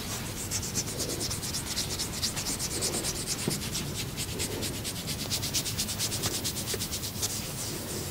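A hand rubbing briskly over the skin and hair at the back of a person's neck during a neck massage: quick, even, scratchy strokes, several a second, that start about half a second in and stop near the end.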